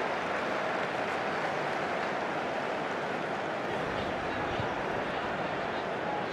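Steady stadium ambience on a football broadcast: an even, crowd-like hum with no distinct shouts or ball strikes.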